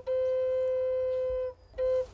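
Background music: a flute holding one long note for about a second and a half, a short break, then the next note of the melody starting near the end.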